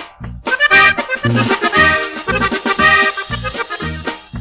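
Norteño corrido music with no singing: an accordion plays a melody over a steady two-beat bass line.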